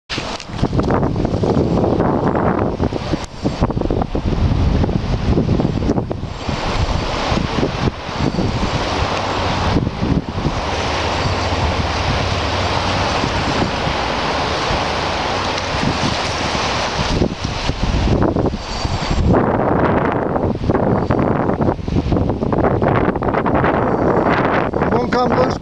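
Wind buffeting the microphone in loud, uneven gusts, over small lake waves washing in the shallows.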